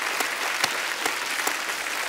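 Studio audience applauding: many hands clapping in a dense, steady patter.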